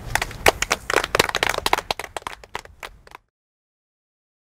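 A small group clapping, irregular and dense at first, then thinning out, cut off suddenly a little over three seconds in.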